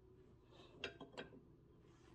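A stack of printed paper with chipboard backing being shifted into place on a paper cutter: a soft brushing sound, then two sharp clicks about a third of a second apart.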